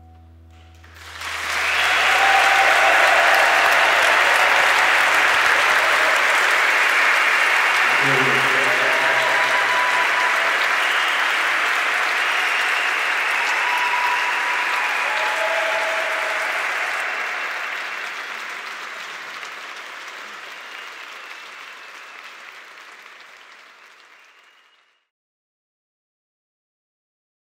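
A concert audience applauding and cheering. It breaks out about a second in over the faint last held notes of the music, then fades out gradually until it stops near the end.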